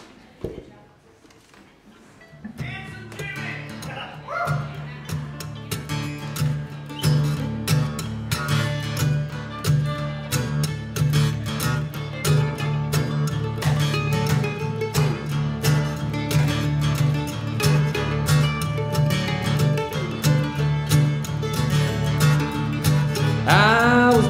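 Live band starting a rockabilly song: after a short lull, guitar comes in about two and a half seconds in, and a steady bass line with quickly picked guitar notes builds through the instrumental intro.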